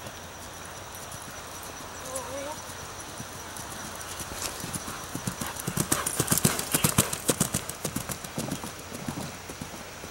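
Hoofbeats of a grey Oldenburg gelding cantering on turf. They grow louder as the horse comes close, are loudest about six to seven seconds in as it passes, then fade as it moves away.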